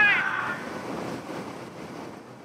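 The end of a crew member's high-pitched celebratory shout, then wind buffeting the onboard microphone of an AC75 race yacht, with rushing water, fading away.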